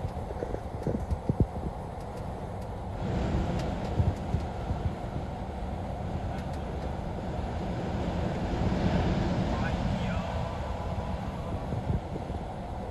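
Road noise heard inside a moving vehicle on a wet freeway: a steady low rumble with tyre hiss from the wet pavement. A few light knocks sound in the first couple of seconds, and the hiss grows louder from about three seconds in.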